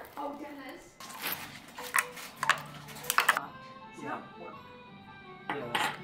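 Glassware clinking and knocking on a kitchen counter while drinks are mixed, with a few sharp clinks about two to three seconds in, over background music.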